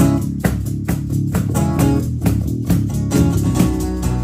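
Two acoustic guitars strummed in a steady, upbeat rhythm over a cajon beat, playing an instrumental introduction.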